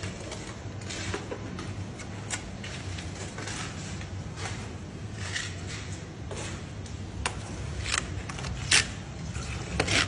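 Scattered short scrapes and taps of a plastering trowel working red lime render, the loudest a little over a second before the end, over a low steady hum.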